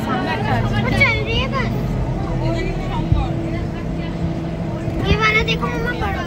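Safari bus engine running steadily, heard from inside the bus, with passengers' voices about a second in and again near the end.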